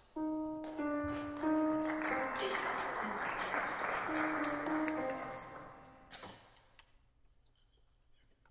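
Piano giving the starting pitches for an a cappella choir: a few single notes played in turn, then played again, with a rush of noise swelling between them. The notes fade away well before the end.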